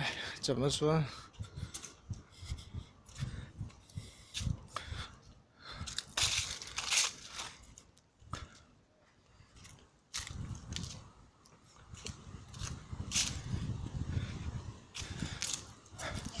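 Footsteps crunching dry fallen leaves on a stone and concrete hill path, with a person's breathing and a brief voiced sound near the start. The steps stop for a couple of seconds about halfway, then carry on.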